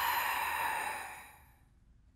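A long, breathy sigh that fades out over about a second and a half.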